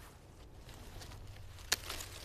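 Faint rustling and crackling of dry perennial stems and twigs being handled, with one sharp snap near the end.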